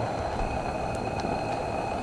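Steady, even stovetop noise from a frying pan on a gas burner, with thin flatbread dough just laid in its lightly oiled surface and beginning to cook.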